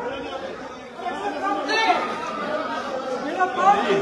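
Several people talking over one another in a tense scuffle, a confused mix of voices that grows louder about a second in.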